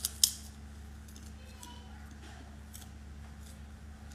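Eating close to the microphone: two or three sharp crunchy clicks as food is bitten, then faint scattered crackles of chewing, over a steady low hum.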